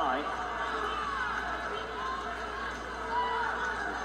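Indistinct background voices, faint and scattered, over a low steady hum.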